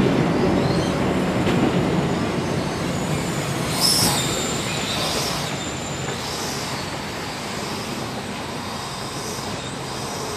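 Amtrak Cascades Talgo passenger cars rolling past and slowing to a stop. The rumble fades gradually, with a few brief high-pitched wheel and brake squeals in the middle.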